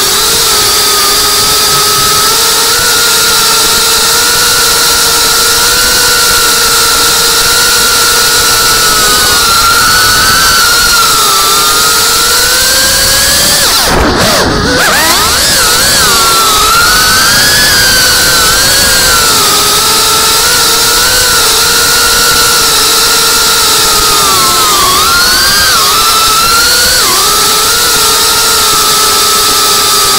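FPV quadcopter's brushless motors and propellers whining loudly as heard from the drone's own camera, the pitch wavering up and down. About halfway through the whine dips sharply and sweeps back up.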